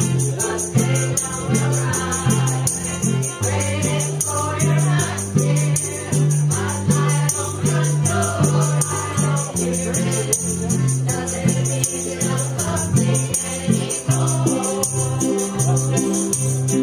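Live string band playing through a PA, with several voices singing together over a bass line that steps between notes about twice a second and a fast, even ticking in the highs.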